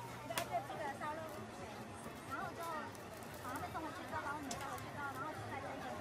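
People talking and background chatter at a busy food stall, with one sharp click about half a second in.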